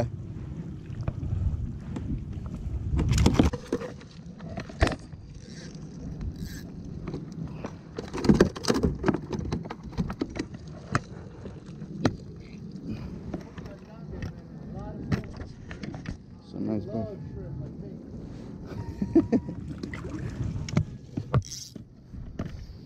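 Scattered knocks and clatter of gear being handled on a plastic fishing kayak, over a steady low rumble.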